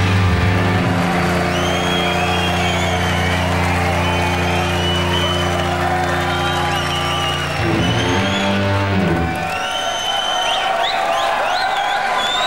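Rock band ending a song live: distorted electric guitars, bass and cymbals hold a long final chord, change notes near the end, then stop a couple of seconds before the close. A crowd cheers and whistles throughout and carries on alone once the band stops.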